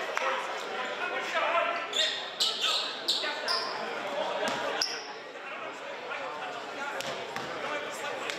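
Basketball bouncing on a hardwood gym floor, several sharp knocks in the first half, with a couple of short high sneaker squeaks and voices chattering in an echoing gym.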